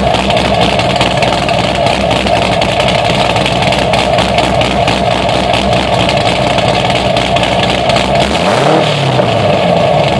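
C6 Chevrolet Corvette V8, fitted with an aftermarket cam and headers, idling through its quad-tip exhaust. About eight and a half seconds in, a single quick rev rises and falls back to idle.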